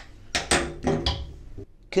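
A man's voice making a few short, breathy, half-spoken sounds: muttered fragments rather than clear words, the first two close together in the first half-second and another about a second in.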